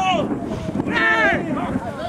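Men shouting at a rugby scrum, one call right at the start and a louder one about a second in, over wind rumbling on the microphone.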